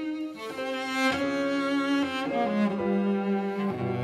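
Cello bowing a slow, legato melody that steps downward in pitch, with piano accompaniment.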